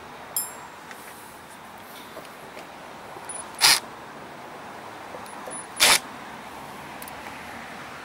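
Makita cordless driver run in two short bursts, about two seconds apart, against a bolt holding the mower's engine on, with a small click shortly before the first.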